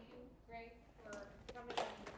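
A faint voice talking away from the microphone, then clapping starting near the end as applause begins.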